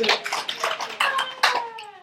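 Hand clapping from a class, thinning out after about a second and a half, with a single pitched tone sliding slowly downward over the second half.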